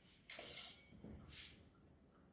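Near silence: room tone with two faint, brief rustles, the first about half a second in and the second about a second and a half in.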